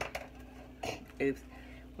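A light click of small objects being picked up and handled, with a brief murmured voice just after.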